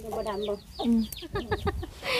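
Chickens clucking, with quick high peeps repeating several times a second.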